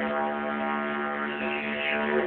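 Didgeridoo played as one continuous steady drone, its overtones brightening near the end. Thin, muffled sound from a cellphone microphone.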